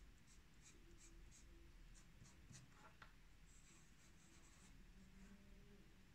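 Faint scratching of a hand-ground fountain pen nib on paper as short test strokes are written, with a longer stretch of steady writing about halfway through.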